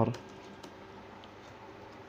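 Computer keyboard typing: a few faint, scattered keystrokes.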